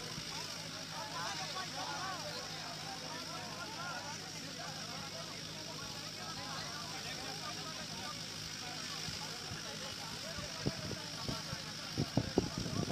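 A group of men talking over one another in a dispute, heard at a distance as a jumble of voices, over a steady low engine hum. A few sharp knocks come near the end.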